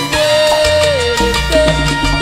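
Live Latin tropical band music with a steady beat carried by a metal güira scraper and percussion over a bass line, while a held melody note slides down about a second in.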